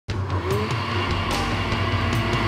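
Countertop blender running steadily, a motor hum with faint ticking over it.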